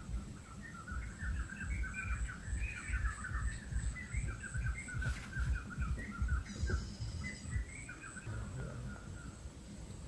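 Birds chirping in quick, busy runs of short notes, with a steady thin high-pitched tone above them and an irregular low rumble underneath.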